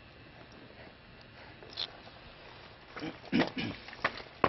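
Faint steady hiss, then in the last second a few short, loud vocal sounds from a person.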